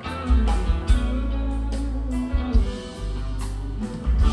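Live rock band playing an instrumental passage: electric guitar over a heavy bass line and drums, with several sharp drum hits.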